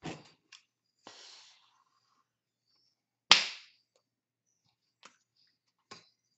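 Hands smacking together or against the body while signing: a few light slaps and taps, with one loud, sharp slap about three seconds in. A short hiss of breath or rubbing comes about a second in.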